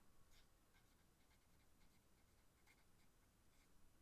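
Faint short scratches of a felt-tip marker writing a word on paper.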